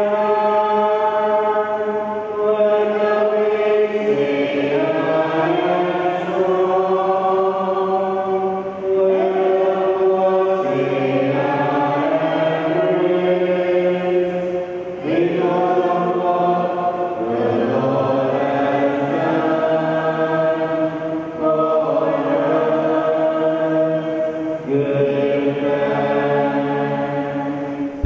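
Small church choir of mixed voices singing a closing hymn into microphones, in long held notes that move to a new pitch every second or two.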